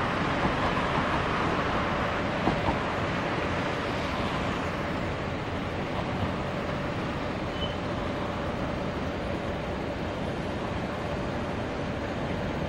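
Steady outdoor background noise: a loud, even rush with a faint steady hum under it and two small clicks about two and a half seconds in.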